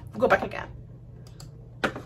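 A few clicks of computer keyboard keys in the second half, with the last one, near the end, the loudest.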